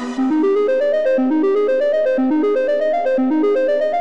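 Software-synthesizer arpeggio playing on its own, without drums: quick, bright keyboard-like notes climbing in short repeating runs.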